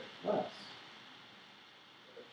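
A single short spoken syllable just after the start, then quiet room tone with a steady faint hiss.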